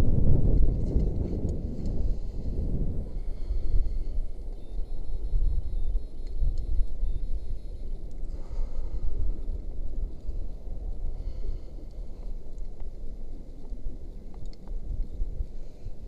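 Wind buffeting an action camera's microphone high on a tall chimney, a low rumble that is strongest in the first few seconds and then eases.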